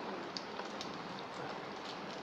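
Steady, faint background hiss during a pause in speech, with one small click about half a second in.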